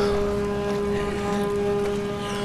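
A boat's horn sounding one long, unbroken blast over the wash of water and wind.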